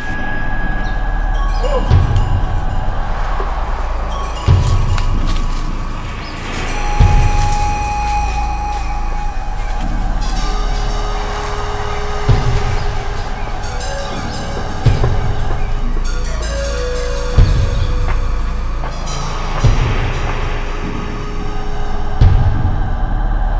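Background film music: a low drum hit about every two and a half seconds under long held tones.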